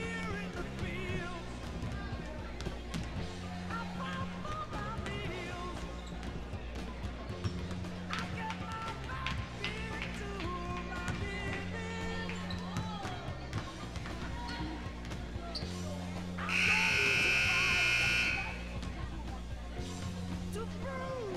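Background music with a steady beat, with basketballs bouncing on a gym floor during warm-up shooting. Near the end a scoreboard buzzer sounds for about two seconds, the loudest sound here, calling the end of the half-time break.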